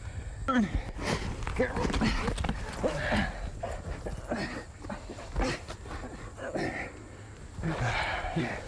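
Grunting and indistinct voices in short bursts during a close-up struggle to hold down a live buck deer.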